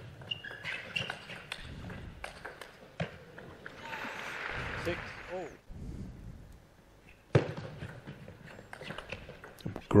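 Table tennis ball clicking off rackets and bouncing on the table through a rally, followed about four seconds in by a short burst of crowd applause and cheering as the point ends. After a brief lull, a second rally of ball strikes starts and runs to the end.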